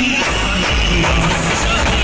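Loud music with heavy bass played through a truck-mounted sound system's speakers.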